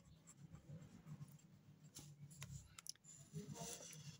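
Faint scratching of a ballpoint pen on notebook paper, with a few light ticks, as figures are written and a line is drawn.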